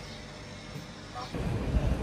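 Low background hum, then, about a second and a half in, a low rumble of passing street traffic.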